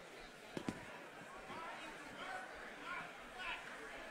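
Faint, indistinct voices of people talking in a large room, with two sharp knocks close together about half a second in.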